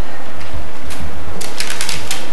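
Steady low electrical hum and hiss on the recording, with a quick cluster of clicks about a second and a half in.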